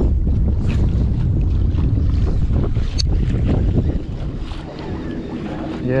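Wind buffeting the microphone over open water, a loud fluttering rumble that eases off about four seconds in. A single sharp click comes about three seconds in.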